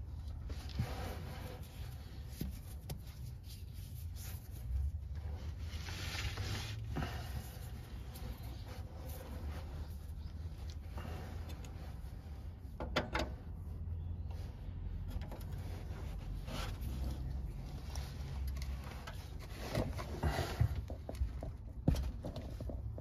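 Scattered clicks, scrapes and rubs of a steel hex wrench being fitted and repositioned on a stubborn, tight transmission drain plug, over a low steady rumble, with a few sharper knocks about halfway through and near the end.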